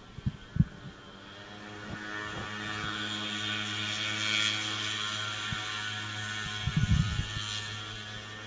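Honeybees buzzing close over a frame lifted out of an opened mating nucleus hive: a steady, pitched hum that swells over the first few seconds and eases off near the end. A few dull handling knocks come near the start and about seven seconds in.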